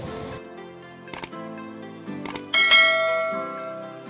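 Subscribe-button animation sound effects over light background music: two mouse-click sounds, about a second in and just past two seconds, then a bright notification-bell chime that rings out and fades.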